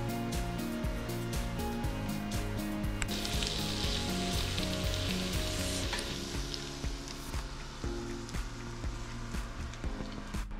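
Cut potatoes frying in a cast-iron skillet, a sizzle that swells from about three seconds in and fades about three seconds later, under background music.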